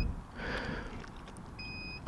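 The Kymco AK550 scooter's keyless ignition gives a short, steady electronic beep near the end as its rotary ignition knob is worked. Before the beep there is only faint background noise.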